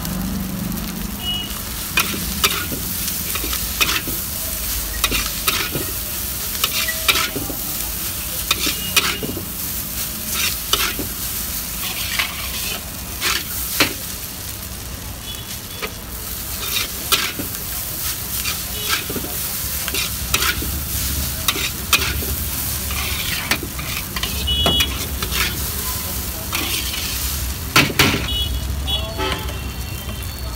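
Noodles and shredded cabbage sizzling in a large iron wok as they are stir-fried, with a steady hiss and a metal spatula clanking and scraping against the wok at irregular intervals.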